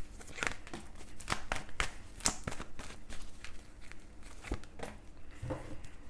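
Tarot deck being shuffled by hand: a run of irregular light flicks and slaps of cards against one another.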